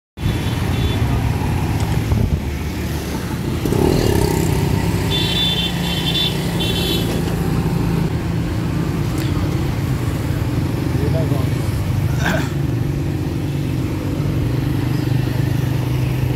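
Steady engine drone of a small motor vehicle driving along a city street in traffic, heard from on board. Three short high-pitched toots about five to seven seconds in.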